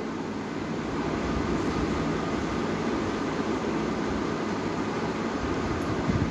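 Steady room background noise: an even hiss with a low hum, unchanging throughout, like a running air conditioner or fan.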